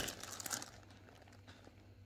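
Clear plastic bag crinkling as a pack of yarn balls inside it is picked up and handled. The rustle is busiest in the first half second, then dies down to a few faint rustles.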